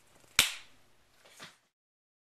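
A single sharp hand slap of two people high-fiving, about half a second in, followed about a second later by a fainter, shorter sound before the sound cuts off.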